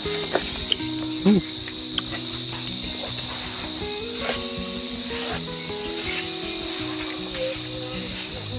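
Steady, high-pitched insect chorus droning without a break, over soft background music of held notes, with a few faint clicks.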